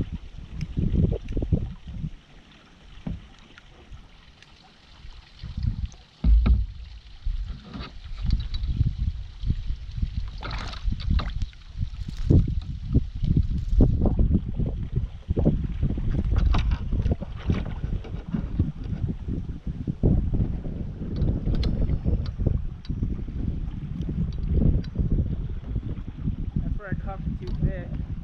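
Small boat being paddled along a slow river: irregular paddle strokes and splashes with knocks against the hull, over a low rumble of wind on the microphone. There is a quieter lull near the start, then one loud knock about six seconds in.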